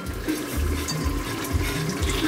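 Soft sloshing of lentil soup in a pot as the shaft of an immersion blender goes into it, over a steady even noise.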